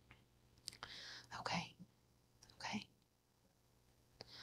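A woman whispering softly: two short breathy utterances, one about a second in and one a little before the three-second mark, too faint for words to be made out.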